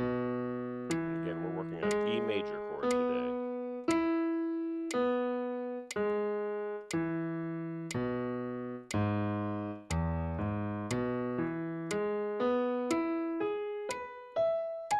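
Piano chords played with both hands, struck about once a second and each left to ring and fade. They quicken to about two a second in the last few seconds as the finger-exercise pattern moves up the keyboard.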